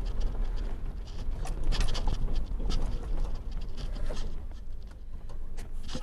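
Truck heard from inside the cab while pulling slowly off the road: a steady low rumble with irregular crackles and knocks.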